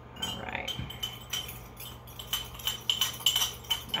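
A metal spoon clinking and scraping against the inside of a small glass jar as dirt-and-water paint is stirred. The taps ring briefly and come faster and louder in the second half, a sound the painter calls funny.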